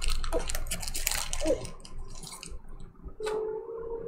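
Foil wrapper of a Contenders Draft Picks football card pack crinkling and tearing as it is ripped open, with the cards sliding out. It is a dense run of crackles and rustles that thins out after about two and a half seconds.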